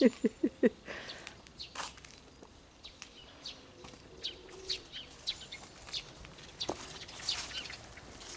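Small wild birds chirping outdoors in scattered short, high calls, with a brief laugh of four short pulses at the very start.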